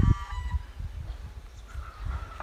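A short honking animal call with several overtones, lasting about half a second at the start, over low buffeting rumble on the microphone that is loudest at the start.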